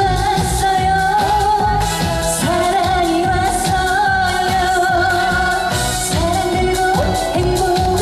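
A woman singing a Korean pop song live into a handheld microphone over amplified backing music with a steady beat, her held notes wavering in vibrato.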